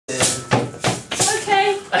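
Acoustic guitar strummed in short strokes, about three a second, with a voice and laughter over it.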